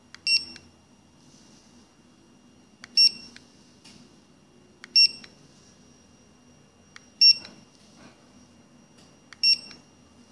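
Generalscan M500BT-DPM handheld Bluetooth barcode scanner giving short high-pitched good-read beeps, five times about two seconds apart, each one the sign that a Data Matrix code has just been decoded.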